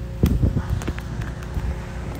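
Wind buffeting a phone microphone as a low, steady rumble, with a few short knocks from the phone being handled, the strongest about a quarter second in.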